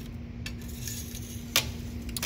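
Steel socket extension bars clinking against each other and the tool cart as they are handled: a few light metal clicks, the sharpest about one and a half seconds in, over a steady low hum.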